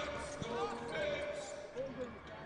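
A basketball being dribbled on a hardwood court, with faint voices from the court.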